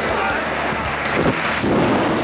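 Airstream rushing past an open aircraft door in flight as skydivers exit, buffeting the microphone. The wind noise is loud and steady and swells briefly about a second and a half in.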